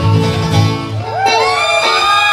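Live bluegrass band, with banjo, acoustic guitar and upright bass, playing the closing bars of a song; about a second in the last chord is left ringing, and whoops from the audience rise and fall over it.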